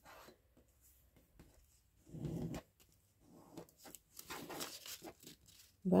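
Cardstock being handled and folded by hand: faint rustling, scraping and creasing of paper, with a brief low murmur about two seconds in.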